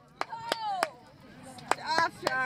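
Sharp hand claps, about three a second, then a pause and two more, with drawn-out cheering calls over them: players or spectators applauding a won point in beach volleyball.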